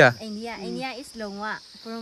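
A steady, high-pitched chorus of insects, likely crickets, drones continuously, with softer talking voices over it.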